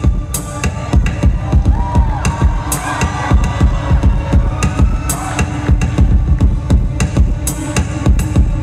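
Live electronic music at full concert volume: a fast, steady programmed drum beat over deep bass, with gliding synth or guitar lines above.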